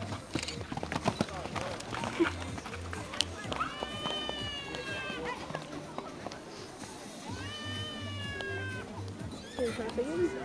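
A horse whinnying twice, each call about a second and a half long, rising then slowly falling, over faint background music with a steady low beat and distant voices.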